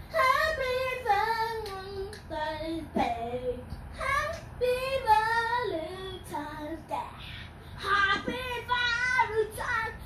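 A child singing unaccompanied, sliding and wavering between notes in long ornamented runs with short breaths between phrases.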